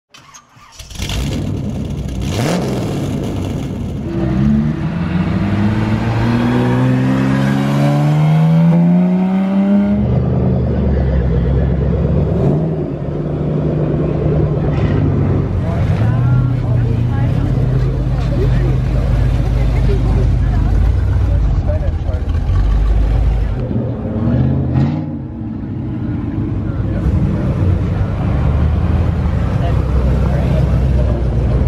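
Car engines: one accelerates with its pitch rising for several seconds and then cuts off abruptly, followed by an engine running steadily at low speed with a short rev near the end. Voices of a crowd are heard underneath.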